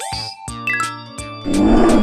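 Upbeat children's background music with a steady beat. About a second and a half in, a loud roar sound effect starts over it and becomes the loudest sound.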